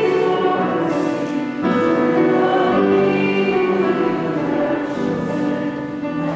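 Choir singing a slow hymn in sustained chords with instrumental accompaniment, the music of the offertory during the preparation of the gifts.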